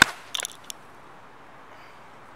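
Golf club striking a ball off turf: one sharp crack at impact, followed within the next second by a few lighter clicks.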